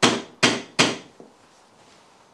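Three loud knocks on a door in quick succession, about 0.4 s apart, each dying away in a short ring.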